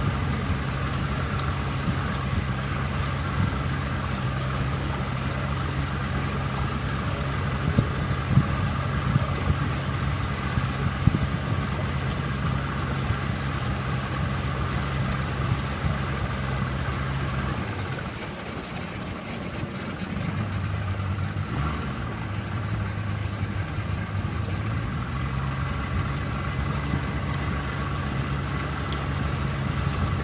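A boat's motor running steadily as the boat travels, with a few sharp knocks in the first third. About two-thirds of the way through the engine drops to a lower note for a few seconds, then picks back up.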